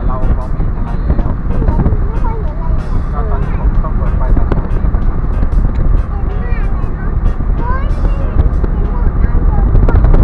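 A voice over the steady low rumble of a moving car, with road and wind noise; the car is a Mitsubishi Mirage.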